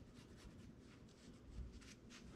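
Faint scratching of a pen tracing around a pattern on upholstery material, with a slightly louder rub about one and a half seconds in.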